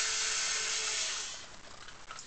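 Power drill-driver running to back a screw out of the steel back plate of a Yale-style nightlatch; the motor winds down and stops about one and a half seconds in.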